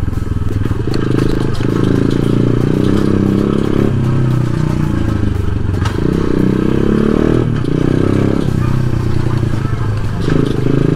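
125cc dirt bike engine running at low speed. Its pitch rises and drops several times as the throttle is opened and eased off.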